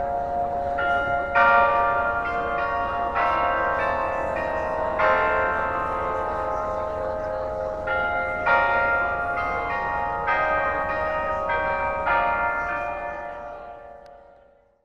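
Delacorte Musical Clock playing a tune on bells: a melody of struck bell notes, each ringing on under the next, that fades out near the end.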